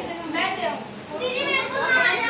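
Several children talking and calling out over one another in high, overlapping voices, in two short bursts.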